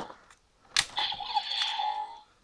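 A sharp plastic click, a second click just under a second later, then about a second of electronic sound effect from the DX Build Driver toy belt's small speaker as its Full Bottles are handled.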